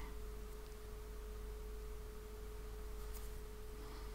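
A faint, steady single-pitched tone held without change, over a low background hum.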